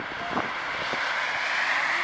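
A car passing close by, its tyre and engine noise swelling steadily to a peak near the end.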